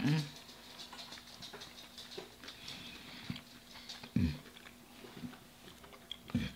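Quiet chewing and mouth sounds of someone eating, with scattered soft clicks, and a hummed "mm" of enjoyment at the start and another about four seconds in.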